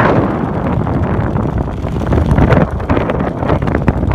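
Wind rushing over a phone's microphone during descent under a parachute canopy: a steady low rumble of airflow with irregular gusts.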